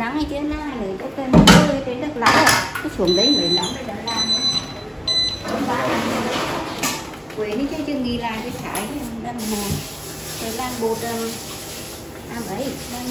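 Voices talking in a room, with a loud knock about a second and a half in, a few sharp clicks just after, and short high steady tones near the middle.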